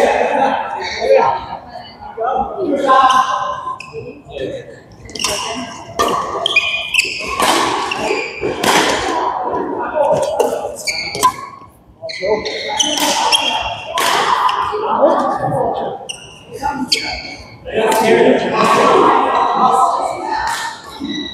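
Badminton rally in a large echoing sports hall: sharp racket strikes on the shuttlecock and thuds of footwork on the court, with people talking in the background.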